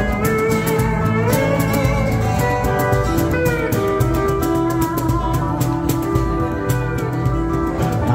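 Pedal steel guitar playing an instrumental solo with notes sliding up and down in pitch, over strummed acoustic guitar and a steady light percussion beat.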